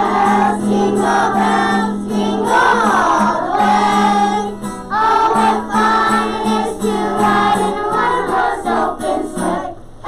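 A group of young children singing together in unison, accompanied by a strummed acoustic guitar.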